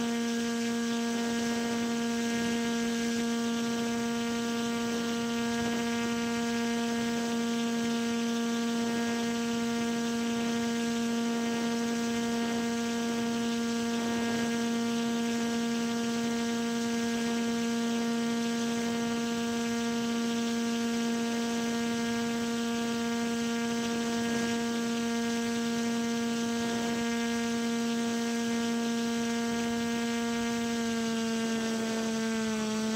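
Motor and propeller of a model paramotor running at a constant speed, heard as a steady, even-pitched hum with a stack of overtones over faint wind.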